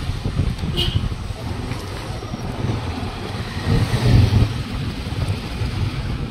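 Wind buffeting the microphone and engine rumble from a motorcycle being ridden, a dense, uneven low rumble that swells briefly about two-thirds of the way through.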